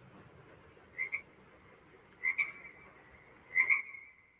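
A repeated animal call: a short high double note, heard three times about a second and a half apart, each louder than the last, over a faint steady hiss.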